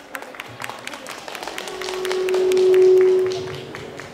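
Scattered audience clapping, as the performers bow. A single steady tone swells up in the second half, becomes the loudest sound, and fades just before the end.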